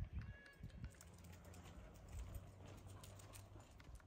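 Ducks on a lake, faint: a brief soft call near the start, then light scattered clicks over a low steady hum.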